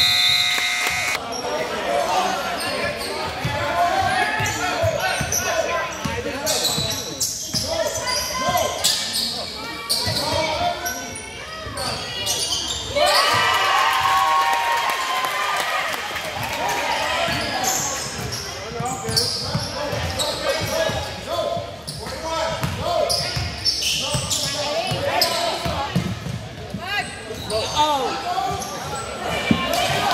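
Basketball game in a reverberant gym: the ball bouncing on the hardwood, sneakers squeaking and players' and spectators' voices. A scoreboard horn ending the period stops about a second in.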